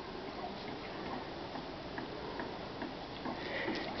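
Steady hum of honeybees crowding an open brood frame, with a few faint clicks.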